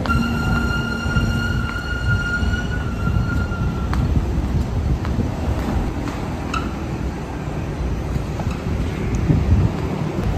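Escalator running with a steady low rumble, and a steady high whine during the first three or four seconds, with a few light clicks later.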